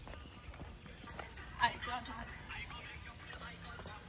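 Footsteps on a paved road: a run of light taps, with faint voices about halfway through.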